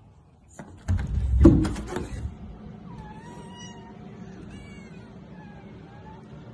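A loud burst of knocks and clattering about a second in, then a cat meowing three times in short high calls that bend up and down, the first the longest.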